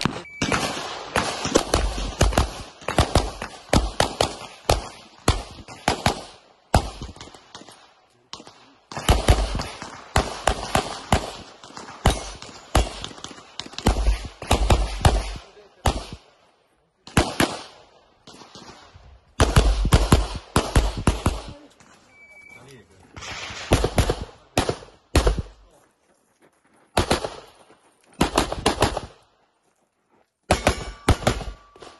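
Semi-automatic pistol fired rapidly in an IPSC stage: quick strings of shots, several a second, broken by short pauses as the shooter moves between target positions.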